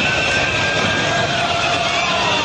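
Dense noise of a large street crowd celebrating, with a thin held horn-like tone over it that slides down in pitch about halfway through.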